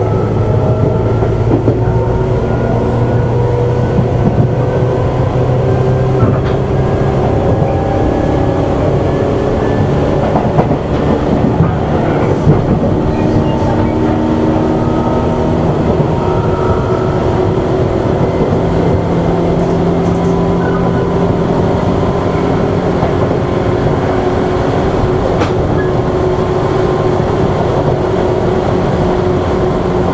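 Tobu 8000 series electric commuter train heard from aboard its MoHa 8850 motor car: steady running rumble with a motor whine that slowly rises in pitch as the train gathers speed. A few clicks of wheels over the rails come near the middle.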